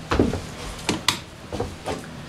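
Scattered short knocks and clicks, about six of them in two seconds.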